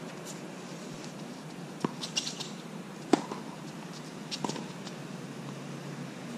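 Tennis rally on a hard court: a few sharp knocks of ball on racket and court, the loudest about three seconds in, with a brief high shoe squeak just before it.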